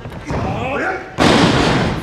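A heavy thud as two wrestlers hit the ring canvas together on a floating rear neckbreaker, about a second in, followed by loud crowd noise; voices can be heard before it.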